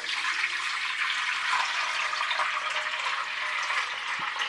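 Water being poured steadily from a plastic pitcher into the clear bowl of a party drink fountain, a continuous splashing pour.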